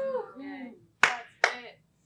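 A person's voice: a drawn-out, wavering vocal sound, then two short, sharp-edged syllables about half a second apart.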